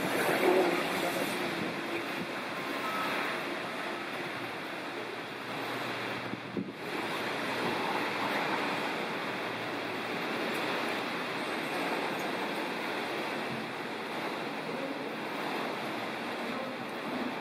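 Steady hiss of falling rain on a wet forecourt, with a brief dip about six and a half seconds in.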